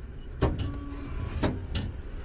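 Bath-ticket vending machine issuing a ticket after its button is pressed: a sharp clunk about half a second in, a brief mechanical hum, then two more clunks near the end.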